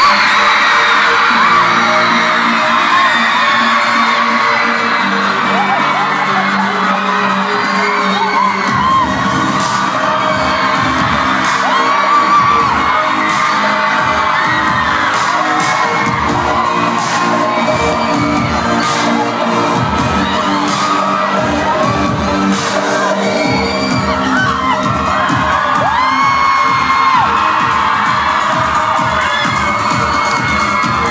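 A live electronic pop band playing through a concert hall's PA, heard from within the audience: sustained synth chords and voice, with a deep bass beat coming in about nine seconds in and crowd whoops over the top.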